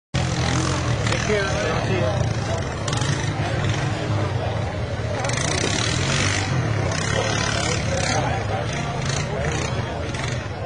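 ATV engines running and revving as a quad is driven through a mud pit, a steady low drone throughout, with spectators' voices mixed in.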